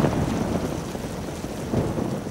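Rolling thunder dying away under a steady rain-like hiss, with a smaller rumble swelling again near the end.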